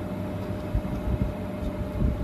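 Handling sounds of fingers twisting thin wire ends against a pair of phone batteries: soft irregular rubs and small knocks over a low rumble and a faint steady hum.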